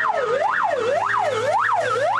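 Fire engine siren sounding a fast electronic wail, sweeping up and down about twice a second over a steady low hum as the truck drives in.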